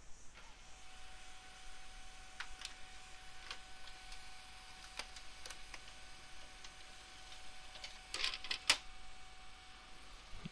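Small desktop laser printer running a print job: a faint steady whine with scattered clicks from the paper feed. A louder clatter comes near the end.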